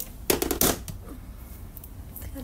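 A brief burst of close rustling, a few quick scrapes about half a second in.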